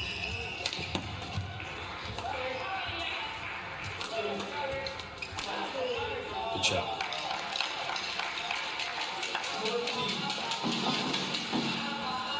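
Badminton rally: rackets striking a feather shuttlecock in quick, irregular exchanges, with shoes squeaking on the court floor, over background music in a large hall.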